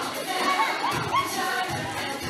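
A roomful of children cheering and shouting, with short high-pitched yells rising and falling, over recorded music.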